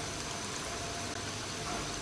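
Breadcrumb-coated fish fingers deep-frying in hot oil in a pan: a steady sizzle of bubbling oil.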